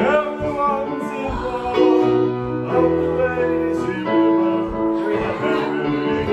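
Live music: an electronic keyboard on a piano sound playing chords with a small acoustic stringed instrument, and a man singing into a microphone.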